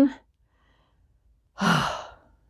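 A woman sighs: one breathy exhale with a little voice in it, starting about a second and a half in.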